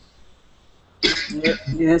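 A person clears their throat with a short cough about a second in, then says "yes" over a call connection.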